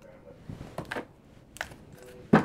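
Tarot cards being handled in the hand as a deck is gathered: a few quiet, short clicks and taps.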